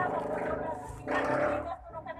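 A low, rough growling voice, in two drawn-out growls: the second starts about a second in and is brighter.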